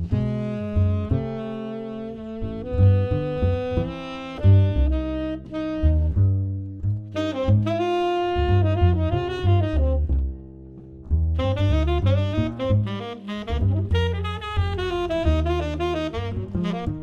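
Tenor saxophone playing a jazz solo line over plucked upright double bass. The sax line pauses briefly about ten seconds in, then carries on.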